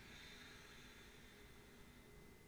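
A faint, slow inhale, fading out about a second and a half in, over near-silent room tone.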